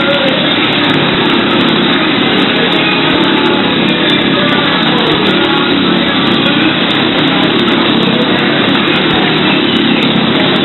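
Motorcycle engine running steadily at speed as the bike circles a wooden Wall of Death drome, with music playing underneath.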